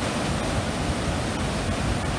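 Waterfall pouring into a narrow rock gorge: a loud, steady rush of water that starts abruptly.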